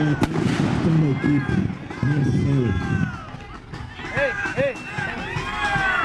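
Several people's voices, overlapping in the last couple of seconds, with a single sharp crack like a firecracker just after the start.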